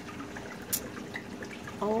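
Faint water trickling and dripping in a running reef aquarium, with scattered small ticks and one sharp click a little under a second in.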